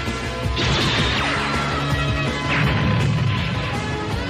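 Anime soundtrack music with crash-like sound effects over it: two noisy bursts, the first about half a second in and the second about two and a half seconds in.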